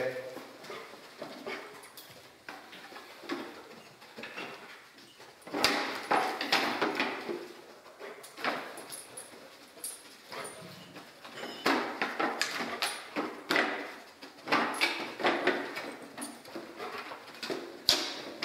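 A detection dog sniffing at a row of scent cans in clusters of quick noisy bursts, with scattered clicks and knocks between them.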